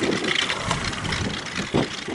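Small boat's outboard motor idling, under a steady rushing noise.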